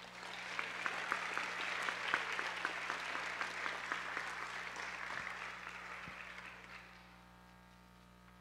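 Audience applauding, swelling quickly and dying away about seven seconds in.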